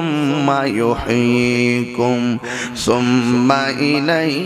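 A man's voice chanting a sermon in a drawn-out, sing-song intonation into microphones, holding long sustained notes and sliding between them with short breaths in between.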